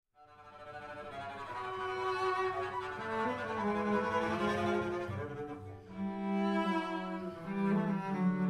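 Cello and double bass playing a bowed duo, a moving tune over a bass line, fading in from silence at the start. The low bass notes grow heavier about halfway through.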